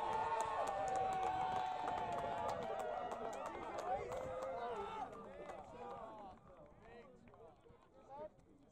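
Spectators on the touchline shouting and cheering, with one long, slowly falling yell over the others and some sharp claps. The noise starts suddenly, stays loud for about five seconds and then dies away.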